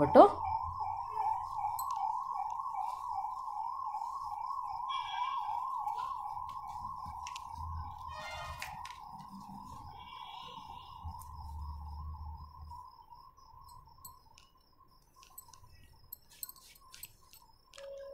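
A siren wailing, a single tone wavering rapidly up and down, fading slowly until it dies away. Faint fabric rustles and light clicks underneath.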